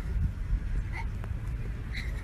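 Small white dog giving short yips while running and playing on grass, once about a second in and again near the end, over a steady low rumble.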